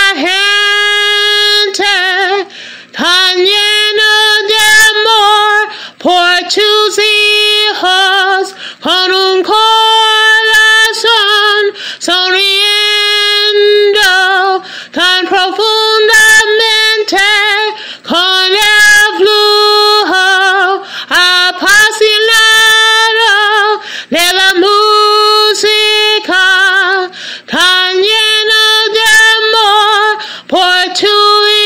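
A woman singing alone with no accompaniment, in phrases of long held notes with vibrato, breaking briefly for breath every few seconds.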